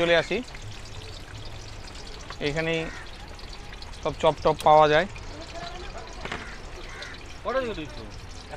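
Voices speaking in a few short phrases over a steady background hiss.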